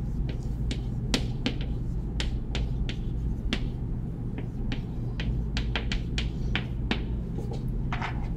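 Irregular sharp clicks and taps, a few a second, over a steady low room hum.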